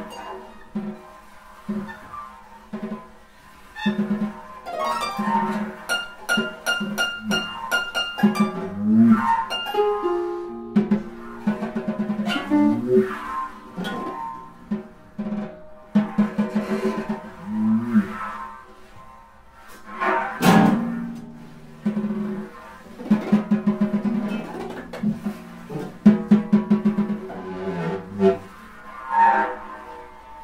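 Freely improvised music on grand piano, drum kit and harp: plucked and struck notes, bursts of rapid repeated low notes, and one sharp loud hit about two-thirds of the way through.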